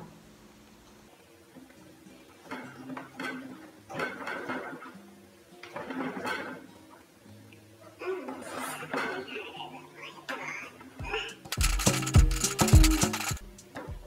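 Kitchen knife stabbing and sawing into a pumpkin's shell to cut the lid, in short bouts, loudest near the end, over background music.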